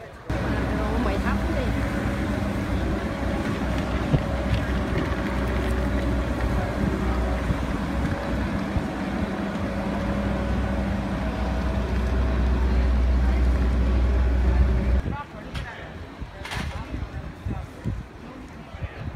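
An engine running steadily with a low hum, growing a little louder before cutting off abruptly about fifteen seconds in.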